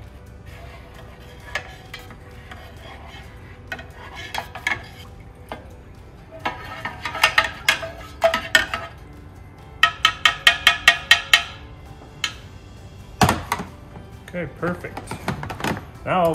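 A plastic spatula stirring cider in a small stainless steel keg, clinking and knocking against the keg's metal rim and sides, while corn sugar is mixed in. The clinks come in short clusters, then a quick run of about seven a second near the middle, and one louder knock a few seconds before the end.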